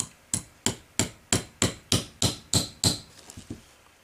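Small hammer tapping a steel pin into a Winchester Model 94 Angled Eject lower tang assembly: about ten even strikes at roughly three a second, each with a short metallic ring, then a few lighter taps near the end.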